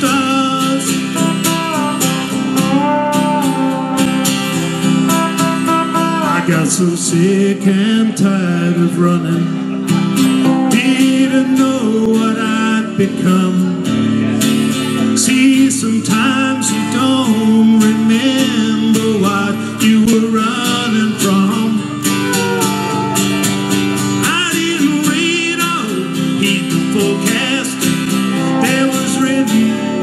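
Live country music, an instrumental break: a steel guitar plays sliding, bending melody lines over a strummed guitar.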